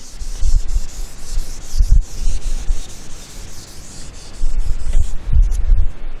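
A whiteboard duster rubbing across a whiteboard in repeated wiping strokes, with a few dull knocks against the board.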